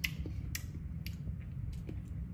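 Low steady room hum with a few short, sharp clicks and taps. The first comes at the very start, as drinking glasses are set down on a stone countertop.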